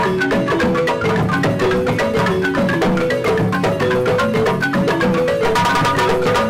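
Several West African balafons, wooden xylophones with gourd resonators, playing a fast, repeating interlocking pattern, with a hand drum beating along.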